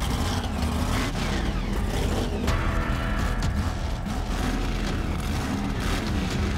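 A mega truck's engine running under power as the truck drives across dirt.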